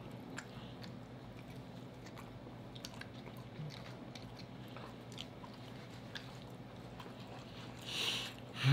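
Faint close-miked chewing of baked chicken, with soft scattered mouth clicks and smacks, over a low steady hum.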